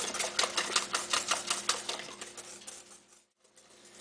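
Whisk beating instant chocolate pudding mix and milk in a stainless steel bowl: a rapid run of clicks as it strikes the bowl, fading and stopping about three seconds in.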